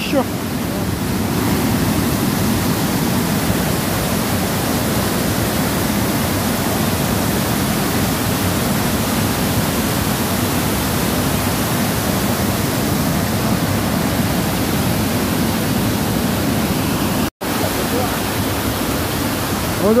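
Waterfall cascading into a rock pool: a steady, loud rushing of water that breaks off for an instant once near the end.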